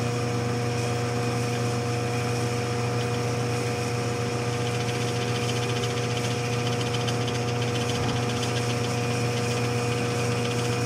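1952 Shopsmith 10ER running with a steady hum: its AC motor turns at a constant 1725 RPM while the factory speed changer is cranked down on low range, slowing the headstock spindle.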